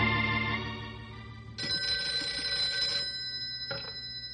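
An organ music bridge fades out. About a second and a half in, a telephone bell rings once, a radio-drama sound effect, and its tone dies away. A short click follows near the end.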